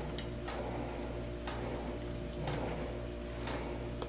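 Low steady hum with a few faint, soft clicks and taps from fried eggplant slices being picked up off a plate and laid into a ceramic baking dish.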